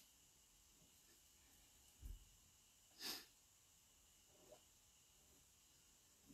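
Near silence: quiet room tone, with a soft low thump about two seconds in and a short breath about a second later, like a sharp exhale through the nose.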